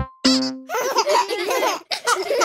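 A short musical note, then several cartoon voices giggling and laughing together for about a second.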